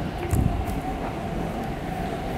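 MTR East Rail Line R-train electric multiple unit pulling out of the platform: a steady low rumble with a thin steady whine over it, and a small knock about a third of a second in.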